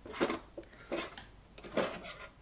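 Small plastic disco light being handled in the hand: three short plastic clicks or knocks, about three-quarters of a second apart.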